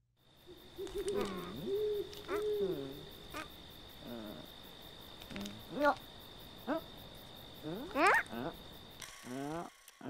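Cartoon character sound effects: a series of short, wordless swooping calls and hoots, ending in a long rising glide about eight seconds in, over a faint steady high-pitched whine.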